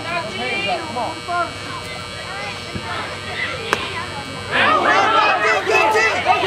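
One sharp crack of a bat striking a baseball about two-thirds of the way through, followed by spectators shouting and cheering.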